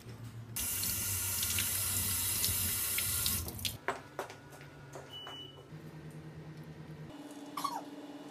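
Water running in a steady stream for about three seconds, starting and stopping abruptly, followed by a few light clicks.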